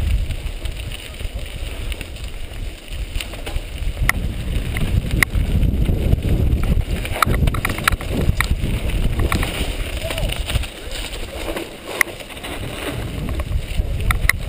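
Wind rumbling on a helmet-mounted microphone during a fast mountain-bike descent on a dirt trail, with tyre noise and sharp rattles and clacks from the bike over bumps, bunched in places and one loud knock near the end.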